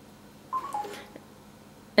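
Samsung smart refrigerator's door touchscreen sounding a short falling two-note beep as a button is pressed, about half a second in.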